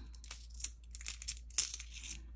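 Coins clinking together in a hand as they are counted out: a scatter of short, light clinks and clicks.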